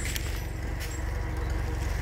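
An engine running steadily at idle, a low even throb, with the winch cable not being pulled in.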